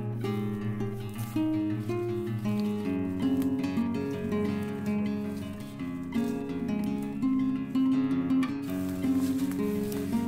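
Background music: plucked acoustic guitar playing a melody.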